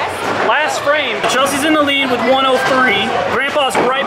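People talking, with several sharp knocks and clatters behind the voices.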